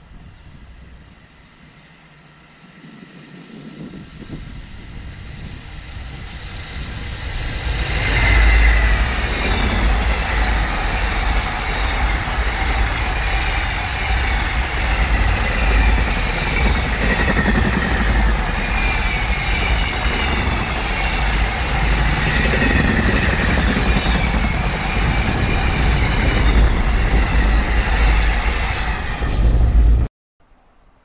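JR Freight container train on electrified main line passing at speed: the rumble grows over the first several seconds, then a steady loud rolling of wheels on rail with a repeating high, falling ring as wagon after wagon goes by. The sound cuts off abruptly just before the end.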